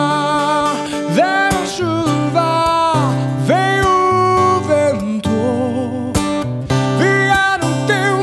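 A live band of acoustic and electric guitars, bass, keyboard and drums playing a slow worship song, with a male lead voice singing long notes that slide up and down in pitch. The acoustic guitar is strummed and drums mark the beat.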